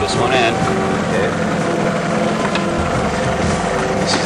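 Airboat's engine and air propeller running steadily.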